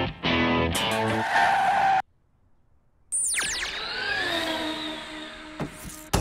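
Rhythmic background music that cuts off about two seconds in. After a second of near silence comes a tire-squeal sound effect: several screeching pitches fall steeply and then bend and fade over about three seconds.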